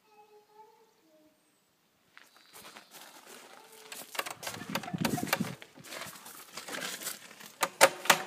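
Brass door knocker on a wooden playhouse door being rattled and knocked: a run of irregular clicks and clatters starting about two seconds in, loudest around the middle, with a sharp knock near the end.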